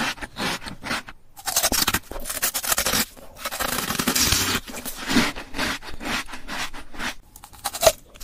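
Close-up mouth sounds of teeth biting and crunching hard, translucent coloured ice cubes: rapid crackly crunches and scrapes in clusters, with brief pauses.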